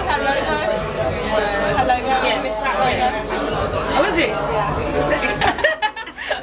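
Speech only: overlapping talk and chatter from several voices in a busy room, with the two women laughing near the end.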